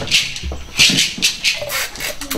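A shaker played in a steady rhythm, short rattling strokes about three a second.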